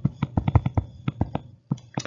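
Stylus tip tapping and scraping on a tablet screen while handwriting, an irregular run of about a dozen short, sharp clicks.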